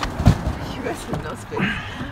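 Indistinct voices of people talking over a steady low rumble inside a vehicle, with a few low thumps.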